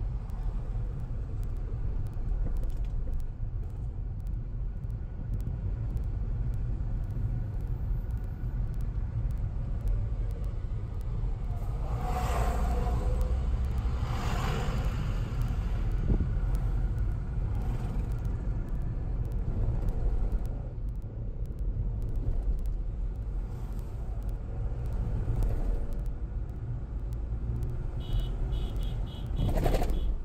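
Steady low rumble of a car's engine and tyres, heard from inside the cabin while driving on a highway. Two brief, louder whooshing rises come about twelve and fourteen seconds in.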